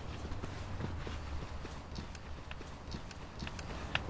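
Irregular light taps and knocks, several a second, over a low steady rumble.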